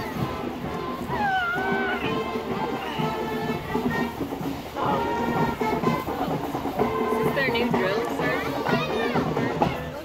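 Marching band playing, heard from down the street, with spectators' voices close by.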